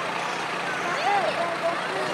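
Heavy vehicle engine running steadily, with indistinct people's voices over it.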